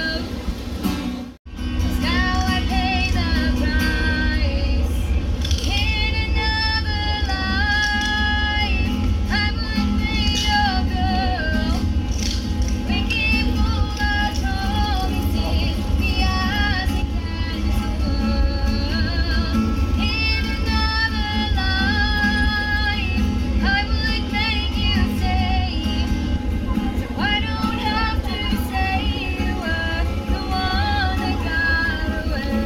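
A woman singing a song and strumming an Ibanez acoustic guitar. The sound cuts out for a split second about a second in, then the song carries on steadily.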